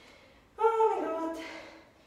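A woman's voice under exertion during a knee push-up: one drawn-out voiced sound starting about half a second in, falling slightly in pitch and fading within a second.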